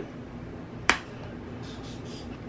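A single sharp click about a second in as a white plastic egg separator is handled on a wooden countertop, followed near the end by a faint brushing sound of hands picking up an egg.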